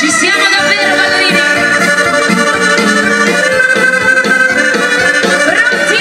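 Italian dance band playing live, with an accordion to the fore over electric guitars, saxophone and drums at a steady dance beat.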